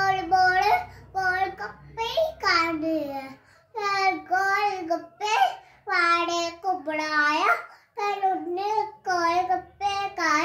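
A young child's voice reciting a Hindi poem in a sing-song chant, in short phrases with brief pauses between them.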